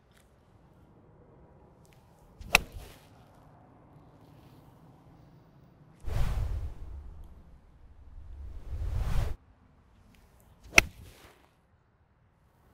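Two crisp seven-iron strikes on golf balls, about eight seconds apart. Between them comes an edited swoosh effect about three seconds long that starts suddenly, dips, swells again and cuts off.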